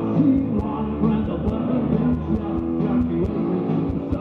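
Live rock band playing loud through the PA, with bass guitar and a steady drum beat, recorded from the audience.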